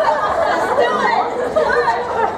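Several people talking over one another: overlapping group chatter.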